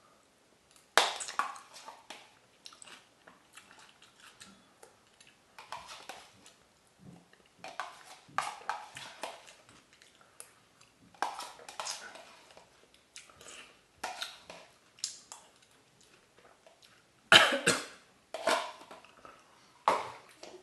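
A person eating, with chewing and mouth noises in irregular bursts. A louder, sharper burst comes about three seconds before the end.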